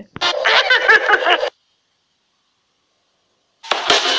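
A person laughing for about a second and a half. Near the end, the soundtrack of the played video starts.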